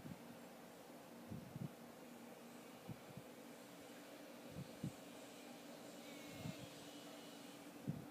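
Near silence: quiet room tone with a faint steady hum and a few soft, short bumps.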